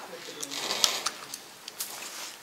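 A few sharp metallic clicks and light scraping as the comb and blade on a horse clipper's head are handled and slid into position by hand; the clipper motor is not running.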